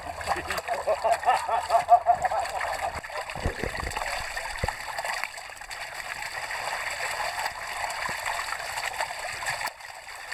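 Water splashing out of a tipped plastic bucket of live trout into a shallow stream, pouring onto the surface over the stream's steady rush; the steady pour begins about three seconds in.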